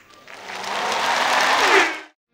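Audience applauding at the end of a dance routine, swelling over about a second and a half and then cut off suddenly.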